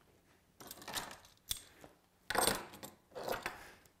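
Light clinks and rattles of small metal parts being handled, in a few short bursts, with one sharp click about a second and a half in.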